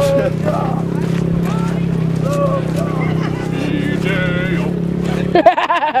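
Several men's voices shouting and calling out over a steady low hum. The hum drops out near the end, just as a loud burst of laughter comes.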